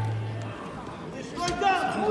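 Voices in a busy sports hall, with raised, shouted voices from about a second and a half in. A low steady hum fades out in the first half-second.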